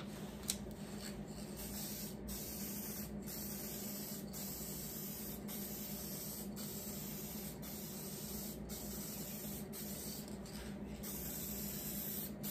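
Aerosol rattle can of paint hissing as a heavier second coat is sprayed on in passes, the hiss broken by short gaps about once a second.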